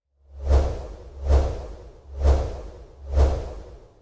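Logo animation sound effect: four whooshes a little under a second apart, each with a deep low boom underneath, rising quickly and then fading.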